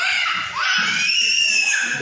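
A young child's high-pitched squeals in play: a short rising squeal, then a longer one that rises in pitch and is held for over a second.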